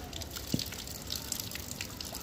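Water from an outdoor wall tap running and splashing irregularly onto the ground, with scattered drips. A single dull thump about half a second in.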